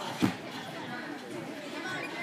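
A single hard thud about a quarter second in as a gymnast lands a flip on the balance beam, over steady crowd chatter.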